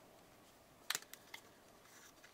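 Small clicks from handling a little plastic carrying case: one sharp click a little under a second in, then a couple of fainter ticks.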